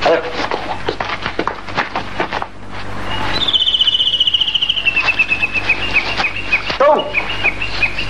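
A bird trilling: a fast run of high chirps that slides slowly down in pitch, starting about three and a half seconds in, then breaking into single chirps. Before it comes a patter of short knocks and clicks.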